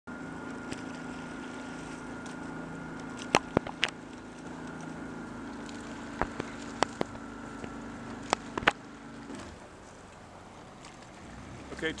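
A motorboat engine running at a steady hum, which drops away about nine seconds in. Sharp clicks come singly and in pairs over the middle of the stretch.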